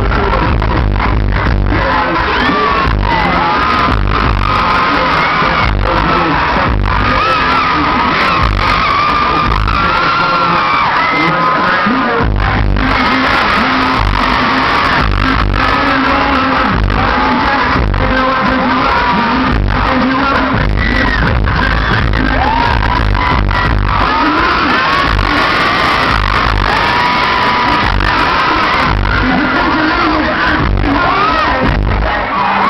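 Loud live R&B/pop concert music over a PA, recorded from the audience: a heavy bass beat with vocals and crowd noise. The bass drops away for a couple of seconds about ten seconds in, then comes back in.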